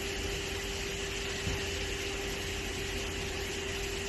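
Steady mechanical hum over an even hiss of background noise, like machinery or ventilation running. One soft knock comes about a second and a half in.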